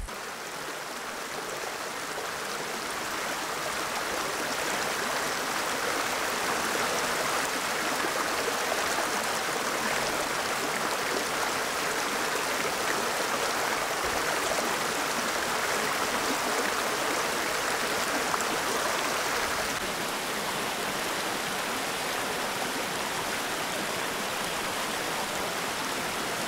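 Shallow, rocky creek running over stones and small riffles: a steady rush of water that builds over the first few seconds and then holds even.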